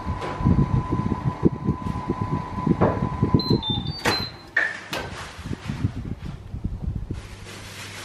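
Built-in Miele oven: a steady tone that glides down and stops about three and a half seconds in, then a quick run of short electronic beeps, a click, and the oven door being opened.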